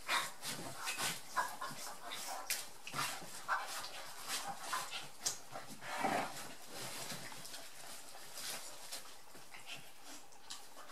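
An adult dog and a puppy play-fighting: a string of short, irregular dog noises and scuffles, busiest in the first six seconds and quieter after about seven seconds.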